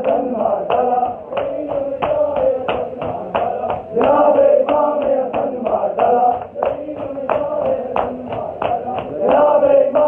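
A crowd of men chanting a mourning lament (nauha) in unison, with rhythmic open-hand slaps on bare chests (matam) keeping time at about two to three beats a second.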